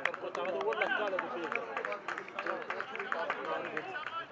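Men's voices talking indistinctly, with scattered short clicks.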